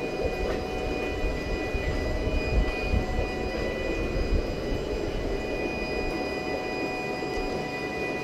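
A steady low rumble with a few faint, steady high-pitched whines above it, even throughout: continuous machine-like background noise.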